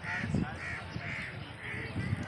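A bird calling over and over, short harsh calls about two a second, with a low thump about a third of a second in.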